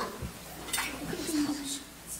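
Low murmuring voices and rustling and shuffling of a group of people moving about, with one low voice holding a short tone about a second in.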